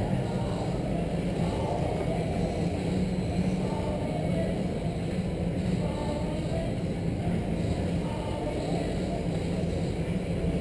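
Steady hum of a large indoor hall with 1/10-scale RC race cars running on the track, and faint distant voices.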